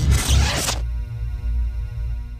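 Logo-animation sound effects: a swoosh lasting most of the first second, then a low held music chord that begins to fade near the end.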